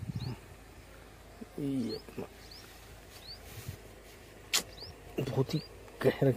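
A bird chirping: short, high, rising calls every second or so over a quiet outdoor background, with a man's brief low hums and one sharp click about four and a half seconds in.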